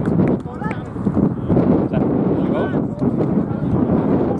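Indistinct shouting voices of footballers on the pitch, with a choppy low rumble of wind buffeting the microphone.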